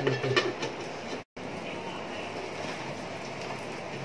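Egg omelette mixture frying in an aluminium kadai on a gas stove: a steady, even sizzle. A brief voice and a clink of the metal lid come near the start.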